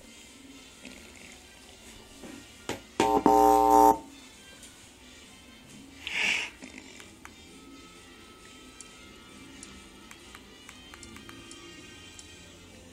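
A loud, steady electronic tone lasting about a second, about three seconds in, over a faint background hum. A short hiss follows a few seconds later.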